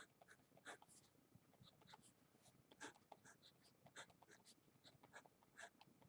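Faint scratching of a Paper Mate pen writing on paper: many short strokes in quick, irregular succession.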